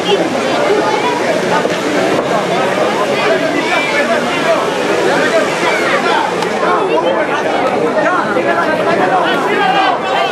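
Ringside boxing crowd: many spectators' voices overlapping in steady chatter and calls, no one voice standing out.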